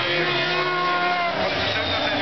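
S2000 touring race car engine running at speed, a steady engine note that sinks slightly in pitch in the second half.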